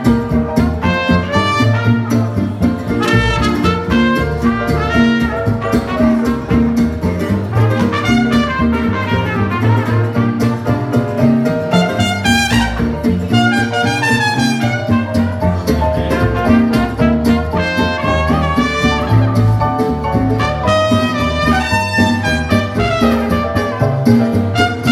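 Live jazz played by a trio: a trumpet carries the melody over a strummed acoustic guitar and a plucked double bass.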